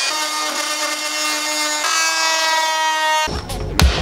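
Handheld rotary grinding tool running at a steady high-pitched whine while grinding the new tow mirror to fit, its pitch stepping up slightly about two seconds in. It cuts off abruptly a little after three seconds, followed by a low thump and a sharp click.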